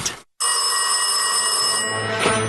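A telephone bell ringing steadily. It starts abruptly about half a second in, after a brief silence.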